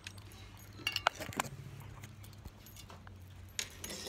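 Quiet handling sounds of a deck of oracle cards being shuffled by hand, with metal charm bracelets clinking on the wrist; a few light clicks come about a second in and once near the end.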